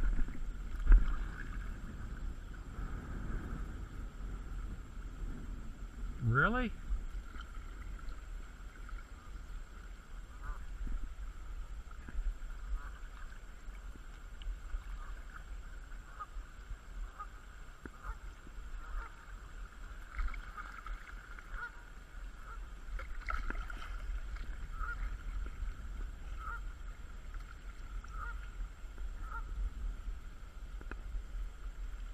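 Kayak paddling on a river: water sloshing against the hull and low wind rumble on the microphone. Geese honk now and then, with one rising call about six seconds in and a run of short calls later on.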